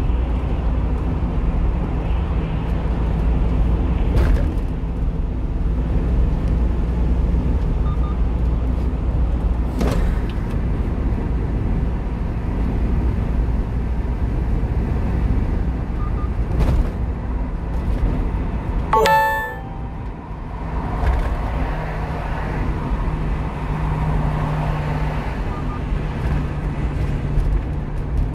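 Steady engine and road noise of a 1-ton truck driving at expressway speed, heard inside the cab, with a few short knocks from the road. A brief beeping tone sounds about two-thirds of the way in.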